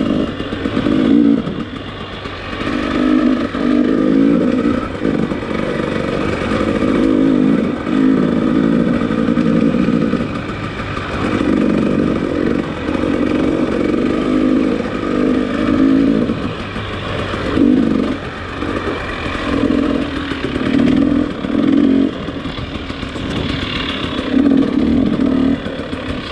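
Dirt bike engine under way on a trail, revving up and easing off every second or two as the throttle is worked. It is heard through a microphone tucked up inside the helmet, with wind rush and some clatter from the bike.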